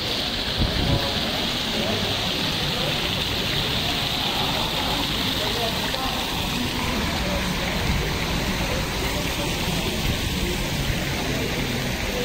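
Tiered stone fountain splashing steadily as water falls from its bowls into the basin.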